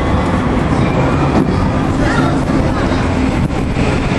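Steady, loud low rumbling noise with faint voices mixed in, and a few brief high-pitched sounds about halfway through.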